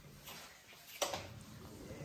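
Quiet room noise with one short, sharp click about a second in.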